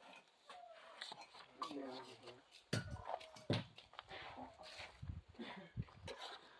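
Faint voices talking at a distance, with a few short sharp knocks in between.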